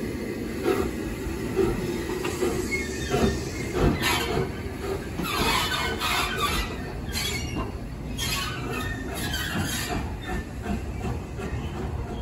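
SR Schools class 4-4-0 steam locomotive 30925 'Cheltenham', a three-cylinder engine, moving slowly off along the line. It makes a steady rumble with uneven beats and wheel-on-rail noise, growing harsher and higher about five to seven seconds in.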